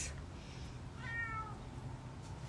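A domestic cat meowing once, a short call of about half a second about a second in, falling slightly in pitch.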